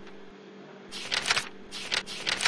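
Computer mouse scroll wheel rolled in short bursts, each a quick run of ratchet clicks, once in the middle and again at the very end, over a steady low electrical hum.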